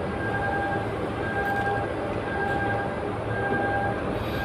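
A repeating electronic beep, one steady mid-pitched tone sounding for most of a second about once a second, over a steady background hiss.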